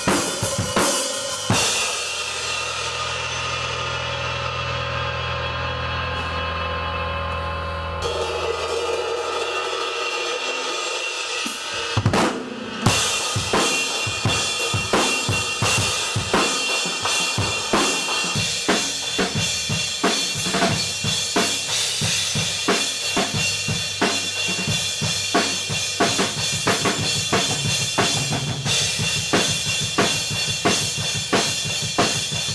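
A late-1960s Rogers Holiday drum kit and an electric bass playing together. After a few opening hits, a held bass note and a ringing cymbal die away over several seconds. A loud hit comes about twelve seconds in, and then a steady driving rock beat with the bass runs on.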